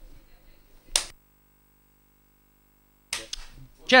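A single sharp click about a second in, after which the commentary audio cuts to dead silence for about two seconds, as if the microphone feed were switched off. Near the end the line comes back with faint noises and the start of a voice.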